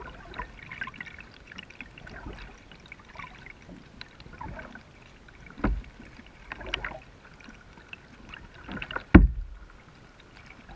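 Kayak paddle dipping into calm river water: small splashes and drips off the blade, with stronger strokes a little past halfway and a louder, deep thump near the end.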